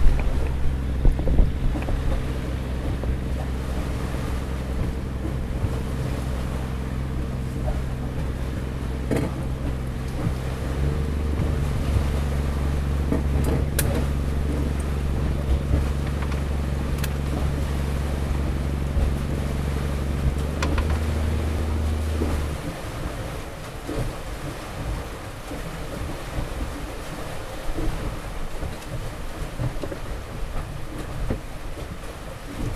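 A boat engine running steadily, changing speed about a third of the way in and then cutting off suddenly. After that only wind and water are left, with a few knocks from work on the deck.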